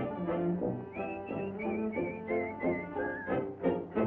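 Cartoon orchestral score with a whistled melody with vibrato over brass accompaniment. The whistle falls in short stepped notes from about a second in.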